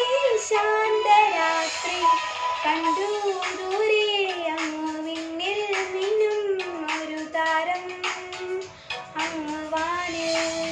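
A girl singing a Christmas carol over a backing track of accompaniment with percussion.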